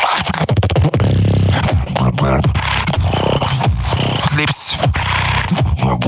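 Solo human beatboxing into a microphone: a sustained low vocal bass under rapid clicks and snare-like hits.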